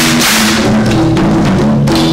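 African drumming ensemble playing: tall hand drums beating a steady rhythm under a wooden xylophone's short repeated melody notes.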